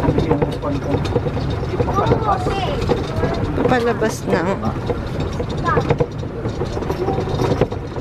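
Golf cart riding over cobblestone paving: a steady low rumble and rattle, with a few short bursts of people's voices over it.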